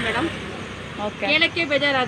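A woman's voice speaking close to the microphone. She pauses briefly early on and starts again about a second in.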